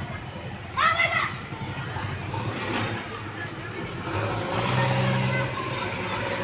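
People's voices outdoors, with one short raised call about a second in, over a constant background din. A low steady drone sounds for about a second and a half, ending about two thirds of the way through.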